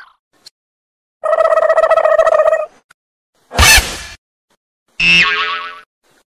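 A string of short cartoon-style comedy sound effects with dead silence between them: a warbling tone lasting about a second and a half, then a short sharp burst, then a pitched effect that slides downward near the end.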